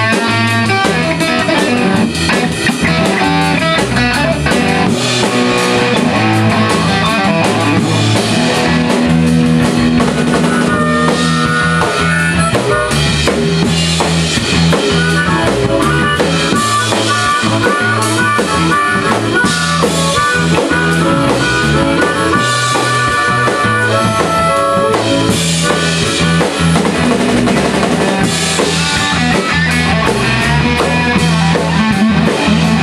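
A live band playing an instrumental passage: electric guitar and electric bass over a drum kit keeping a steady beat, with no singing.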